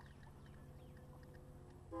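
Near silence: a faint, steady low hum of background noise.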